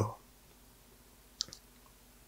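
A man's voice trails off, then a pause of near silence broken by one faint, short click about one and a half seconds in.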